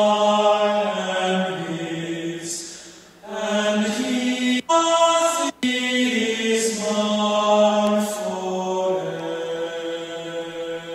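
A hymn being sung slowly, long held notes stepping up and down in pitch, with a pause for breath about three seconds in. Shortly after, the sound cuts out twice for an instant. This is the entrance hymn that opens the Mass.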